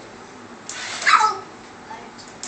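A toddler's short, high-pitched squeal about a second in, with a breathy start and a pitch that rises then falls.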